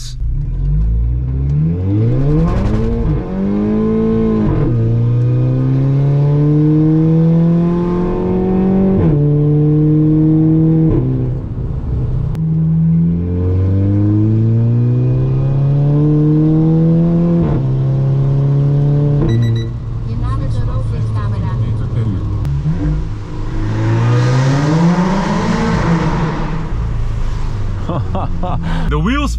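Volkswagen Golf Mk6 GTI's turbocharged 2.0-litre four-cylinder, heard from inside the cabin, accelerating hard through the gears in several pulls. Its pitch climbs in each gear and drops sharply at each quick upshift. Traction control is off on a wet road and the wheels spin in first and second. Near the end comes a short rushing noise.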